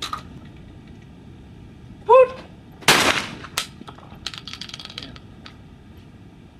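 A short, loud shouted call for the clay, then about a second later a Baikal 12-gauge semi-automatic shotgun fires with a sharp report that rings out. A second, sharper crack follows about two-thirds of a second after.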